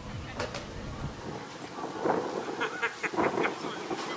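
Wind buffeting the microphone with a low rumble that dies away after about a second. This is followed by a cluster of short clicks and knocks, the loudest part, about two to three and a half seconds in.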